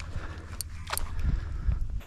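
Gear handling in a kayak: a low steady rumble with two short sharp clicks about a second in, half a second apart.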